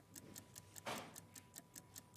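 Faint, steady clock-like ticking of a countdown-timer sound effect, with a brief soft breathy sound about halfway through.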